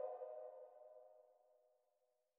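The last chord of an electronic beat dying away: a held synthesizer tone of several steady pitches that fades out within about the first second, leaving near silence.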